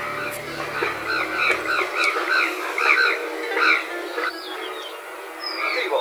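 Frogs croaking in a run of short, repeated rising-and-falling calls, two or three a second, that die away about four seconds in. A low hum underneath stops about two seconds in.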